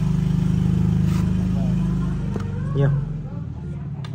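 An engine running close by, a steady low hum that fades away a little over two seconds in.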